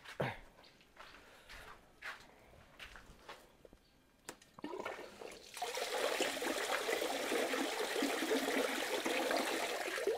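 Water spraying from a pipe into a concrete tank, starting a little past halfway and then running steadily. Before it, a few light knocks as the outlet pipe is handled.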